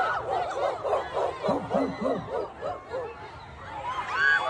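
Voices making quick repeated bark-like syllables, about three to four a second, dying away about three seconds in.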